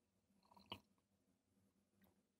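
Near silence, with one faint, short mouth sound from sipping beer from a glass, a little under a second in.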